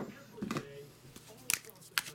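A few light, sharp clicks of small objects being handled on a table: one at the start, one about a second and a half in, one at the end.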